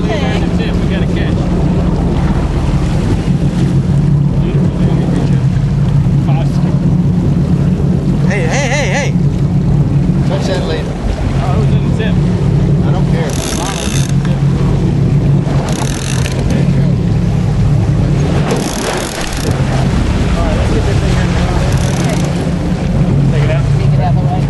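A boat's engine runs with a steady low drone under a wash of wind and water noise. Several short hissy bursts come through at intervals, about every three seconds from the middle on.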